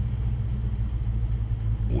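Steady low rumble of a vehicle engine idling, heard from inside the cab.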